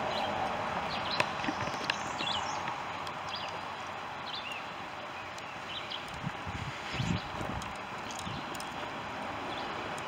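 Steady wind rushing through riverside trees, with small birds chirping on and off and a few light knocks. The wind buffets the microphone in a low rumble about seven seconds in.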